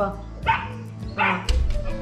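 A white puppy giving two short, high barks that drop sharply in pitch, about three quarters of a second apart, followed by a thump.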